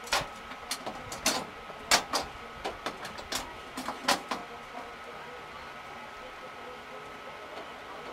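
Irregular sharp clicks and knocks from the stock car's cockpit, about a dozen over the first four or five seconds. After that only a faint steady hiss with a thin steady tone remains.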